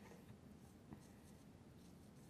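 Faint squeak and rub of a marker writing on a glass lightboard, with a light click just under a second in.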